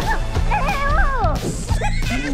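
High-pitched cartoon Minion voices squealing and laughing, their pitch sliding up and down, over background music.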